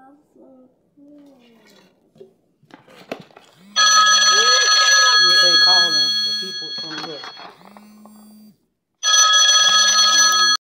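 A mobile phone ringtone sounds loudly, twice: a first ring of about four seconds starting a few seconds in, then a second ring near the end. Faint voices come before it.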